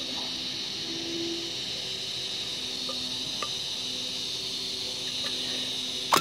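Insects (crickets or cicadas) droning steadily at a high pitch, with a faint click or two from diagonal cutters prying at the sheet-metal filter box on a microwave magnetron about halfway through.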